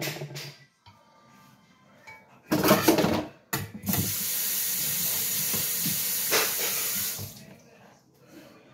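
A short loud burst, then a steady hiss lasting about three and a half seconds that stops sharply near the end.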